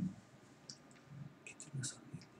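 A few quiet clicks of a computer mouse.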